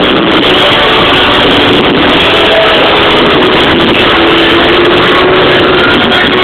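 Live rock band playing at very high volume, picked up by an overloaded camera microphone, so the music comes through as a dense, distorted wash with a few held notes just audible.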